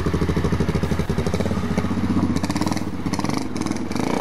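BMW F650 GS Dakar's single-cylinder Rotax engine running at low revs with a fast, even pulsing beat as the bike rides through a muddy puddle, through what is likely its aftermarket Staintune exhaust.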